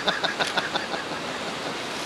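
A steady rushing hiss of outdoor background noise, with faint distant voices and a few small ticks in the first second.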